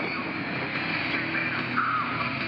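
Kawasaki V-twin ATV engine running steadily as the quad rolls over a rocky trail, with music faintly underneath.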